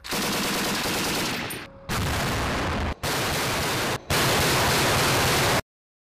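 Belt-fed machine gun firing long sustained bursts, heard as four stretches of fire cut abruptly one after another. The loudest is the last, which stops suddenly about a second and a half before the end.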